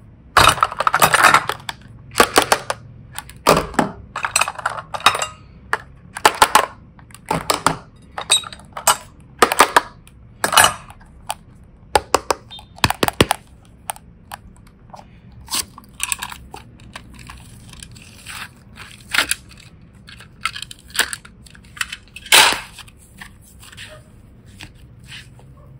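Miniature plastic suitcase toys handled in a glass bowl: a long irregular string of sharp clicks and clatters as the cases knock against the glass and each other and their latches snap open, roughly one every second.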